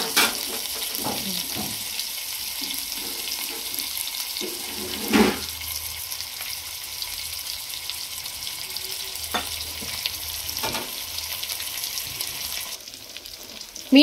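Whole spice-coated fish sizzling steadily in oil on an iron dosa griddle, with a few sharp crackles, the loudest about five seconds in. The sizzle drops quieter near the end.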